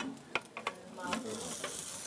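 Food sizzling in a frying pan, with a couple of sharp utensil clicks against the pan early on; the sizzle grows louder about a second in.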